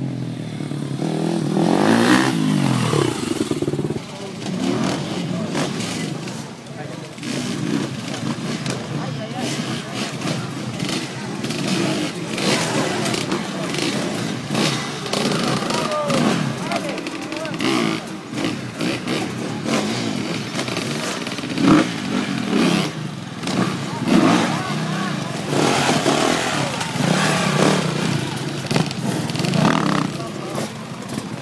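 Enduro motorcycle engines revving in short bursts, rising and falling in pitch, as the bikes are ridden over log and tyre obstacles, with knocks and crowd chatter around them.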